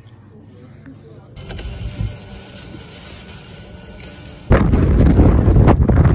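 Strong wind buffeting the microphone outdoors, a low, rough rumble that comes in suddenly and loud about four and a half seconds in, after a quieter stretch of fainter wind noise.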